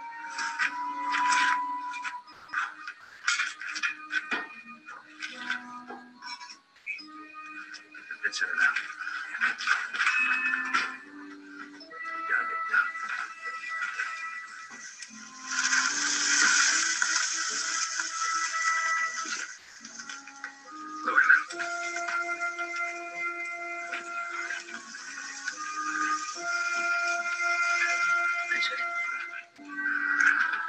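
Television episode music score with held notes, with sharp clicks through the first ten seconds. A loud hissing noise comes in over the music about halfway through and lasts some four seconds.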